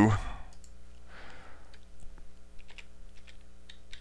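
Computer keyboard keys typed in short, irregular clicks as numbers are entered into a calculator, over a steady low electrical hum.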